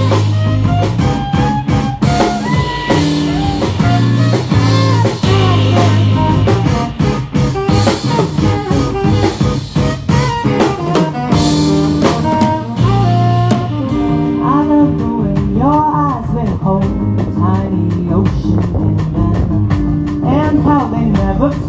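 Live band playing an instrumental break: saxophone melody over electric guitar, bass guitar and drum kit, with no singing. The drums' cymbals thin out about twelve seconds in while the melody continues with sliding, bending notes.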